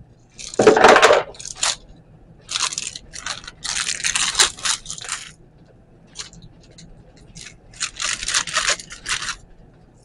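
Thin plastic packaging bag crinkling in several short bursts as it is handled and opened and a pump dispenser and its lid are pulled out.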